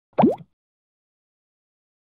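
A single short sound sliding quickly upward in pitch about a quarter second in, then dead silence.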